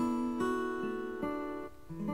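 Instrumental backing music between sung lines: acoustic guitar notes, a new note or chord about every half second, with a short dip in level just before the next chord near the end.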